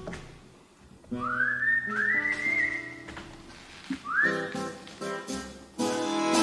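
Someone whistling a melody: three high notes, each swooping up into a held pitch, about a second in, around two seconds and about four seconds in. Plucked strings with a double bass play along underneath.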